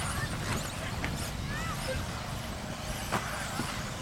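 Electric 1/10-scale RC buggies racing, their motors whining in short rising and falling glides as they accelerate and brake, with a few light clicks and knocks mixed in.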